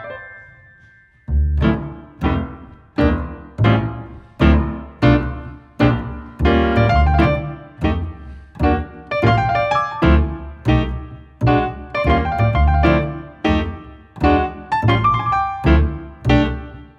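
Jazz played by grand piano and upright double bass. A piano phrase dies away, and about a second in a steady pulse of chords with low bass notes starts, falling roughly every two-thirds of a second.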